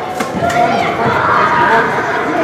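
Overlapping shouts and calls of young footballers and coaches in a large indoor hall, with a sharp knock about half a second in.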